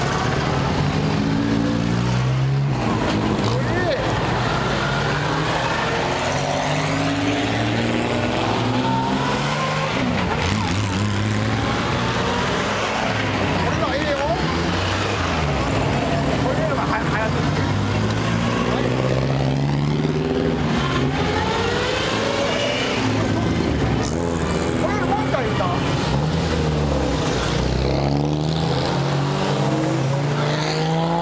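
Vintage car engines pulling away one after another, each rising in pitch as it accelerates and then giving way to the next, over a steady background of crowd voices.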